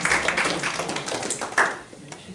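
A small audience clapping, dying away about a second and a half in.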